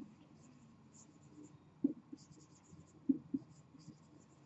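Marker writing on a whiteboard: faint, short strokes as a word is written out, with a few sharper strokes about two seconds in and again near the end.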